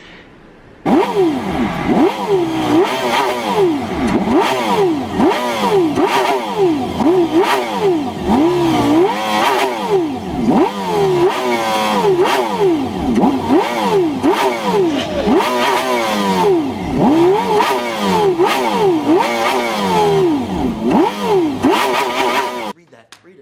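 High-revving car engine revving hard, its pitch climbing and falling back over and over, about once every second or two. It starts about a second in.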